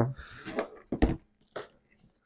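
Backpack being handled: three short clicks and rustles, about half a second apart, as the bag's zipper pulls and straps are moved, the middle one the sharpest.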